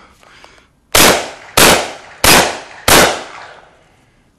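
Four gunshots fired at a steady pace, about two-thirds of a second apart, each followed by a fading echo.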